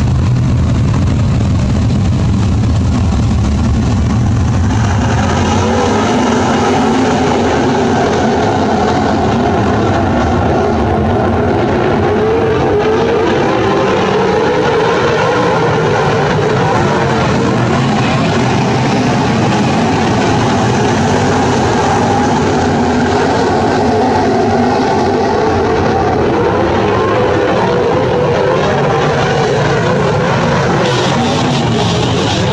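A field of winged sprint cars' V8 engines running low and slow at pace, then rising sharply to full throttle about five seconds in as the green flag drops, and running hard together at racing speed for the rest.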